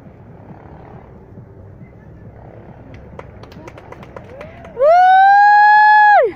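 Quiet outdoor background with a few light clicks. Then, near the end, a loud siren-like wail rises in pitch, holds for about a second and a half, and falls away.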